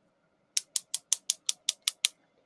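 A quick, even run of about nine sharp clicks, roughly five or six a second, from a small plastic Scentsy wax warmer being handled and turned in the hands.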